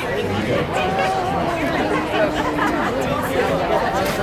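Crowd chatter: many people talking at once, with overlapping voices and no single speaker standing out.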